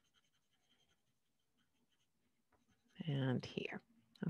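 Faint, quick scratching of a colored pencil shading on paper, stroke after stroke, thinning out and stopping about two and a half seconds in. Near the end a woman's voice starts speaking.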